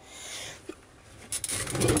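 Rummaging among things stored in a cluttered shed to pull out a bucket: a soft rustle, a single small knock, then clattering and scraping that builds near the end as items shift.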